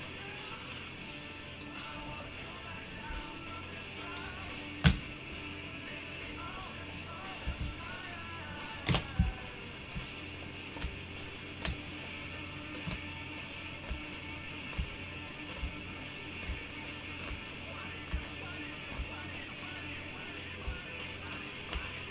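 Quiet background music, with soft clicks and taps of trading cards being handled and flipped through, about one a second. The sharpest clicks come about five and nine seconds in.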